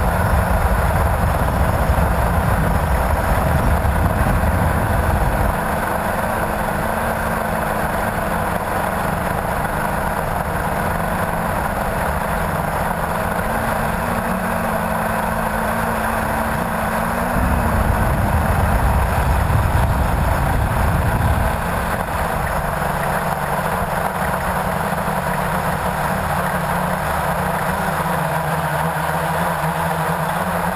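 Blade 350QX quadcopter's brushless motors and propellers buzzing steadily in flight, with a brief rise in pitch about seventeen seconds in. Wind noise rumbles on the microphone for the first five seconds or so and again for a few seconds near the middle.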